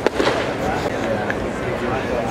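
A single sharp crack of a baseball impact right as the batter swings at the pitch, over steady ballpark crowd chatter.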